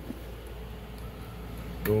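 Quiet steady low electrical hum with faint handling noise. Near the end comes a sharp click as the transmitter is keyed into the three-transistor CB linear amplifier, and a louder steady buzzing hum starts at once.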